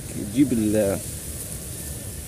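A man's voice saying a single word, then a pause filled only by a steady outdoor background hiss.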